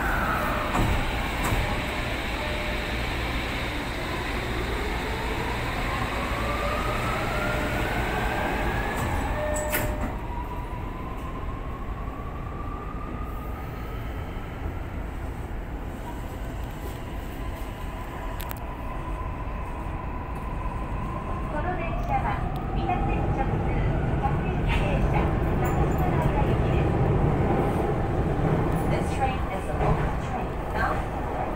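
Toei Mita Line 6500-series electric train pulling away and gathering speed, heard from inside the cab. The traction motors whine in a series of rising tones over the rumble of wheels on rail, and the rumble grows louder in the last few seconds.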